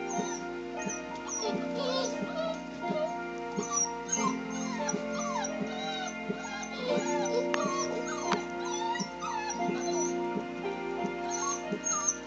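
Clumber spaniel puppies whimpering in short squeals that rise and fall in pitch, in two bouts, over background music with steady held tones.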